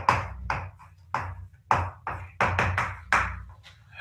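Chalk writing on a blackboard: a quick run of sharp taps and short scratching strokes, about a dozen in four seconds.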